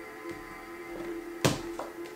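Soft background music of sustained tones, with a single sharp tap about one and a half seconds in from tarot cards being handled on a wooden table.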